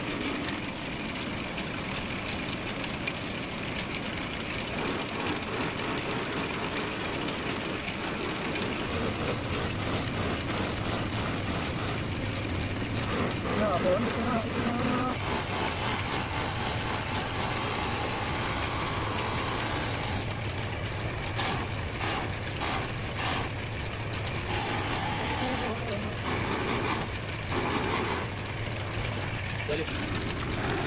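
Motor-driven buffing wheel running steadily with a constant low hum, its spinning disc rubbing against a turned wooden mortar as it is polished.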